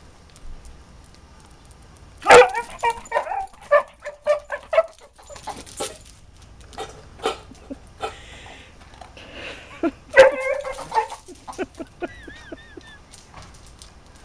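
Basset hound barking: a loud outburst of barks about two seconds in and another about ten seconds in. Between them come short clinks and crunches of it eating from a metal food bowl.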